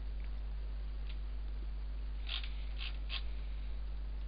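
Steady low electrical hum with a few short soft clicks, three of them close together a little past two seconds in, from a computer mouse being clicked while dragging a CAD sketch.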